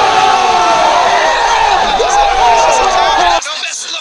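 A group of young men shouting excitedly together, many voices yelling "oh!" at once. It cuts off abruptly about three and a half seconds in.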